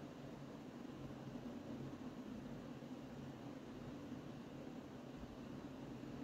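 Faint steady room tone: an even hiss with a low hum under it, and no distinct events.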